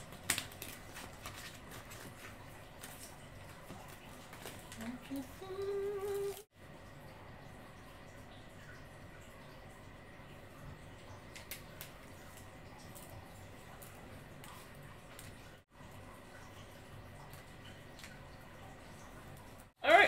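Faint rustling and crackling of adhesive vinyl being peeled off its backing sheet by hand while weeding a cut design, with a few small ticks.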